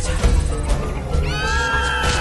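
Dark trailer score with a low drone and sharp hits. A little over a second in, a shrill, cry-like sound effect with many overtones swoops up and then holds.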